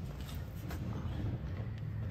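Quiet room tone with a steady low hum and a few faint, scattered clicks.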